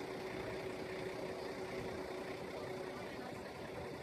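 Truck engine idling steadily, with a faint steady hum over it.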